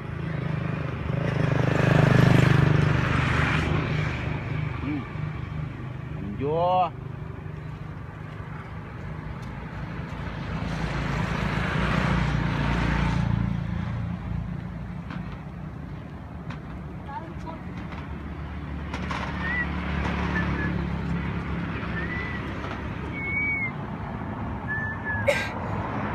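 Road traffic going by, several vehicles rising and fading in turn, with a short rising squeal just before seven seconds in.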